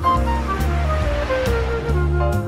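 Instrumental swing-style jazz: a melody line stepping steadily downward over a walking bass, with a noisy wash behind it.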